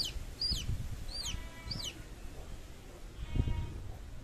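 Newly hatched chick peeping: four high, falling chirps about half a second apart, then a low thump near the end.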